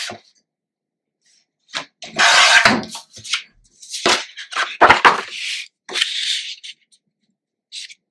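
Sheets of scrapbook paper handled on a cutting mat: a series of short rustles and slides as paper is picked up, moved and laid down, several in a row from about two seconds in.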